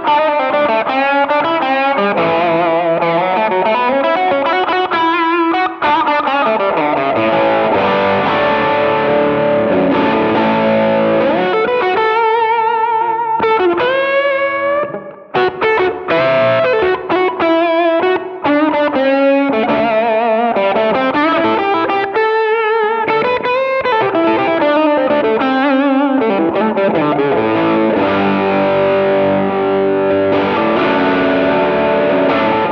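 PRS electric guitar played through a DS Custom Range T germanium treble booster with a distorted tone: single-note lead lines with string bends and wide vibrato. There is a short break in the playing about halfway through.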